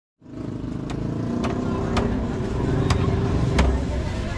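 A knife chopping into a trimmed young coconut on a wooden block: five sharp strikes, about half a second to a second apart, over a steady low engine-like rumble.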